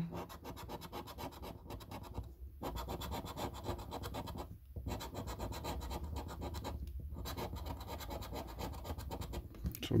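Scratch card's scratch-off coating being scraped away in rapid, close strokes. There are brief pauses about two and a half, four and a half and seven seconds in.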